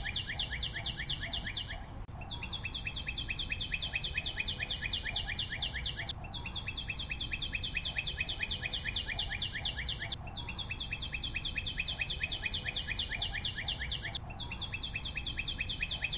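Background sound effect of bird chirping: a rapid, even trill of high chirps, several a second, in a loop that restarts about every four seconds.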